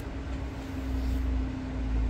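A low rumble that swells about a second in, over a steady hum, while the protective film is pulled off a portable monitor's screen; any peeling sound is faint.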